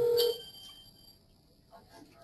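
A short electronic beep, a steady mid-pitched tone lasting about half a second, with a fainter high ringing tone trailing on to about a second in.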